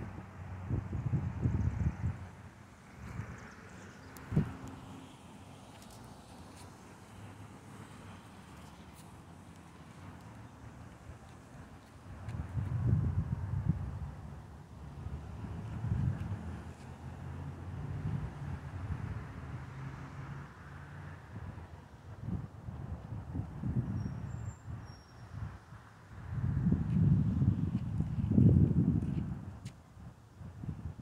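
Storm wind gusting across a phone's microphone in irregular low surges, the strongest near the end.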